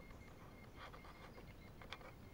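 Near silence, with a few faint soft rustles of footsteps on dry leaf litter, about a second apart.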